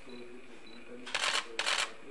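Camera shutters firing in two quick bursts of clicks, each about a third of a second long, a little past the middle; a faint voice carries on underneath.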